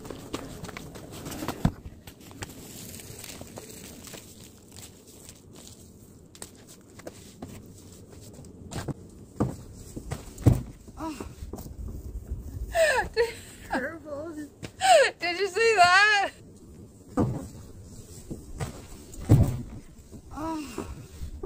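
Footsteps and scuffing on dry ground while an extension cord is handled, then a woman's loud, wavering cry lasting about three seconds as she nearly falls, with a shorter vocal sound near the end.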